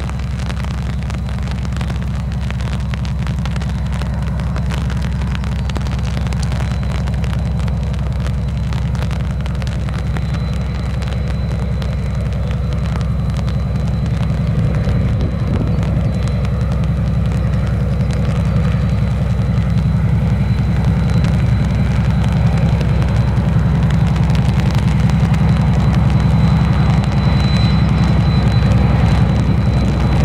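ST44 (M62-class) diesel locomotive's Kolomna 14D40 two-stroke V12 engine running under load, growing steadily louder as it approaches and passes, followed by the rolling of the long train of loaded wagons.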